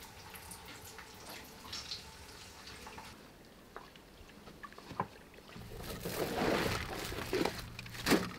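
Quiet kitchen sounds: scattered light clinks and knocks of pots and utensils, then from about five and a half seconds in a louder stretch of running water over a low steady hum.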